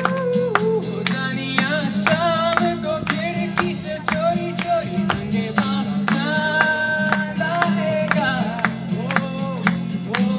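Acoustic guitar strummed in a steady rhythm with a man singing over it, amplified live on stage; about two-thirds of the way through he holds one long note.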